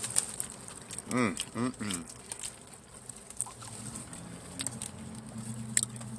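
Close-up wet chewing and mouth clicks of a man eating a large cheeseburger, a scatter of small irregular clicks and crackles.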